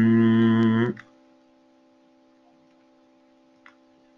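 A man's voice holding one long, steady "uhh" hesitation sound that stops about a second in, followed by near quiet with a faint steady hum.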